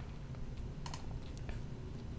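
A handful of light, faint clicks from computer input, a small cluster about a second in and one more near one and a half seconds, over a low steady room hum.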